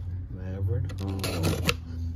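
A cardboard shipping carton being handled, rustling and scraping in a short burst in the second half, with a man's brief "oh".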